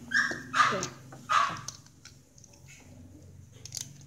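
A dog barking three times in quick succession, followed by a few light clicks of plastic toy parts being handled near the end.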